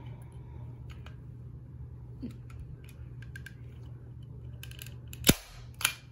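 Bostitch manual staple gun firing: one loud, sharp snap about five seconds in, then a second, quieter snap half a second later. A few faint handling clicks come before.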